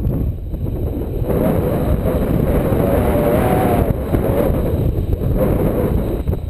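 Wind buffeting the microphone of a pole-mounted action camera during a paraglider flight: a loud, steady, fluctuating rumble with a faint wavering whistle above it.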